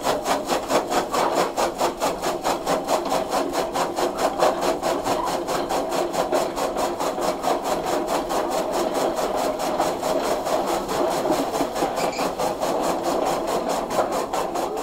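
Electric chaff cutter running, its blades chopping green fodder grass as it is fed through the chute, in a fast, even chopping rhythm.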